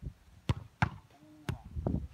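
Four sharp thumps in under two seconds, uneven in spacing: a football being struck and bouncing on packed sand.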